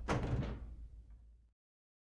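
A single heavy thud, sudden and then ringing out in a room and fading over about a second and a half before the sound cuts out to silence.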